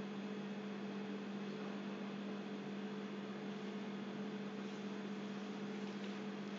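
Steady low hum over a faint even hiss, unchanging throughout, with no other sound.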